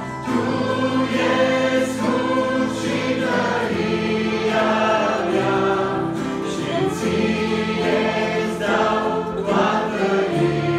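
Youth choir singing a Romanian hymn in mixed voices with instrumental accompaniment, the sustained chords changing every second or two.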